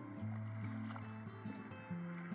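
Background music of slow, sustained low notes that shift every half second or so.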